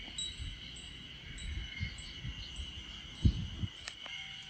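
Faint outdoor ambience of insects calling: a steady high-pitched buzz with short, higher chirps repeating about every half second, over a low rumble of wind and handling on the microphone.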